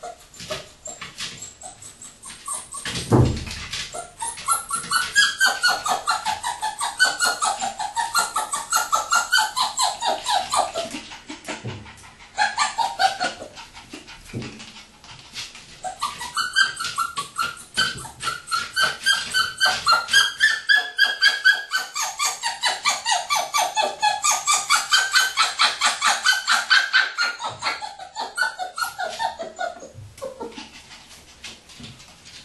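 A Parson Russell terrier puppy whining in long runs of rapid, quavering whimpers, with a short break partway through. A single thump comes about three seconds in.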